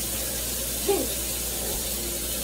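Steak frying in a pan on a high heat, a steady sizzling hiss of hot fat, with a brief voice-like sound about a second in.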